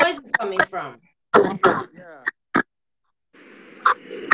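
A voice over a live-stream call, breaking up into short fragments as the connection drops out. A little after halfway it cuts to dead silence for about half a second, then comes back as a steady hiss with a few sharp clicks.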